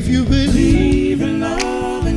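Live band and singers: several voices hold a sustained harmony chord over bass, the chord shifting once about halfway through.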